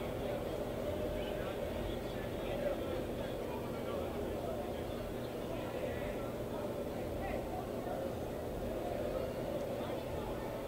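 Ballpark ambience: indistinct chatter of players and spectators, with no words standing out, over a steady low background hum.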